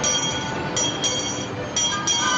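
A handbell rung over and over, about once a second, above a steady din of street traffic.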